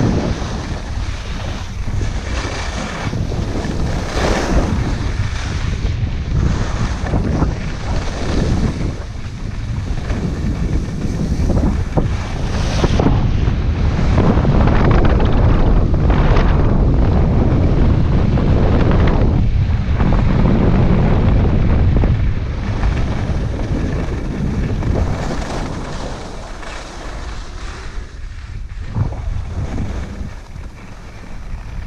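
Wind buffeting a body-mounted camera's microphone during a fast ski descent, mixed with the scrape and hiss of skis on packed snow that swells with each turn. Loudest through the middle of the run.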